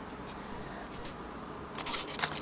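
Faint handling noise from a handheld recording, with a few light clicks near the end.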